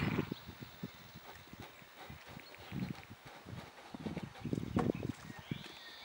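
Horse walking on soft dirt ground, its hooves falling in dull clusters of thuds, with a short bird call near the end.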